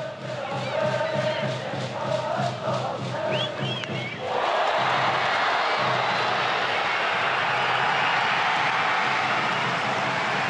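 Baseball stadium crowd: a cheering section's music with a steady beat and chanting, then about four seconds in the crowd breaks into a loud, sustained cheer as a two-run double goes over the left fielder's head.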